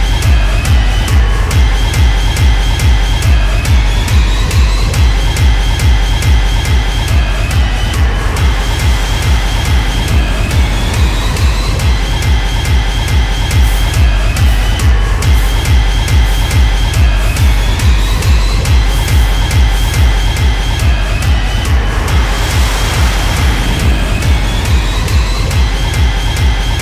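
Fast, hard techno with a steady, even kick drum and a repeating high synth riff. The kick comes back in right at the start after a short break, and a noise sweep swells about three-quarters of the way through.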